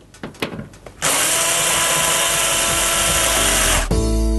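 Black+Decker cordless screwdriver driving a Torx screw into a tumble dryer's metal back panel. A few light clicks come as the bit is set in the screw, then from about a second in the motor runs steadily for nearly three seconds and stops abruptly.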